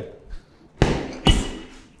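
Two boxing-glove jabs landing to the body, about half a second apart, each a sharp thud with a brief echo.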